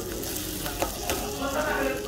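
Kitchen scissors cutting through crispy-skinned roast pork belly, the crust crackling and crunching, with two sharper snaps about a second in.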